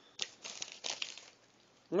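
Paper food wrapper crinkling in the hands, a few short rustles during the first second or so.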